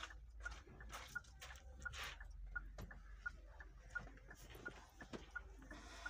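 Faint, steady electronic ticking, about three short high ticks a second, over a low hum, with a few scattered soft clicks.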